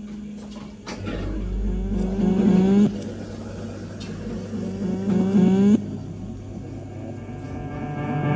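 An Amazon Echo Dot smart speaker giving out strange low, drawn-out tones that glide upward and cut off suddenly, about every three seconds, over a steady hum. The owner takes it for a glitch in the speaker.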